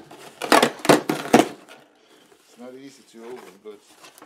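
Corrugated cardboard shipping box being torn open by hand: three short, sharp rips in the first second and a half, followed by a man's quiet voice.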